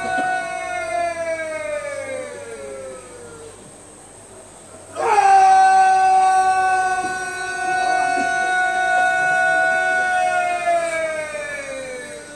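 Two long, drawn-out shouted parade commands from a border guard, each held on one pitch for several seconds and sliding down in pitch as it ends. The first is already sounding and dies away within the first few seconds. The second starts suddenly about five seconds in, is louder, and is held about six seconds before falling off near the end.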